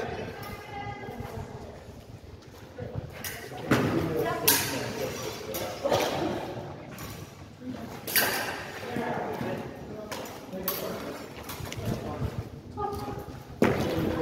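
Practice swords striking in a sparring bout: about five sharp hits spread a second or more apart from about four seconds in, with faint talk underneath.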